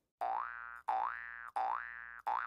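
Logo-sting sound effect: three springy 'boing' tones in quick succession. Each starts sharply, slides up in pitch and fades over about two-thirds of a second.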